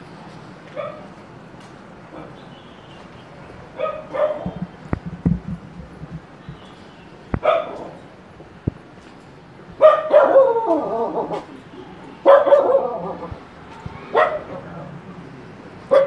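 A dog barking, about six separate barks spaced a couple of seconds apart, the loudest two in the second half.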